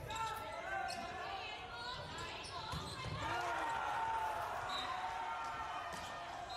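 Sound from an indoor volleyball game in a gymnasium: the ball being struck and bouncing, sneakers squeaking on the court, and players calling out.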